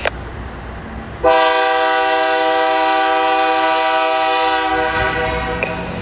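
Air horn of an approaching Canadian Pacific freight locomotive sounding one long blast of several chime notes. It starts about a second in, lasts about three and a half seconds and cuts off, over the low rumble of the train.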